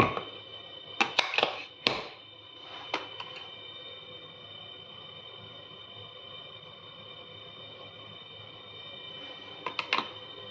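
A few sharp clicks and knocks of containers handled on a stone kitchen counter, bunched in the first two seconds with one more about three seconds in and a quick few near the end, over a steady whine of several high tones.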